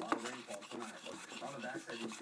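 Faint voices in the background with light rubbing and handling noises and a few soft clicks.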